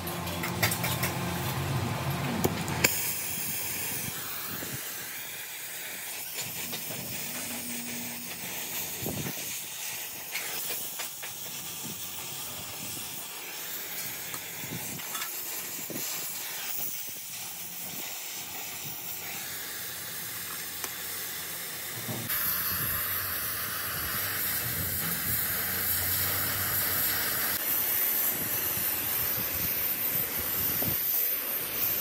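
Gas torch flame hissing steadily as it heats a joint in steel tricycle-frame tubing, with a few sharp metal clicks in the first seconds as the tubes are set in place. The hiss grows louder and brighter about two-thirds of the way through.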